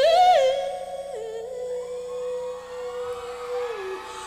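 A woman singing live into a microphone, one long held note that swells upward at the start, settles with a slight step down, and falls away just before the end. Soft sustained accompaniment lies under the voice.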